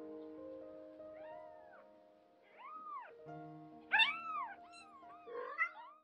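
Young kitten mewing: a string of short, high mews that rise and fall in pitch, the loudest about four seconds in, with several quicker ones near the end. Soft background music plays under them.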